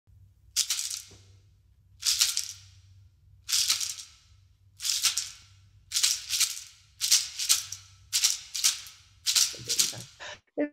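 A hand rattle shaken in single strokes, slow and spaced at first, then quickening to about two shakes a second in the second half.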